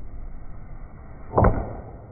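Baseball bat hitting a pitched ball: a single sharp crack about one and a half seconds in.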